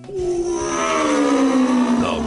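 Radio programme title jingle: an effects-processed voice draws out the word "The" in one long note that slides slowly down in pitch, over a hissing sweep.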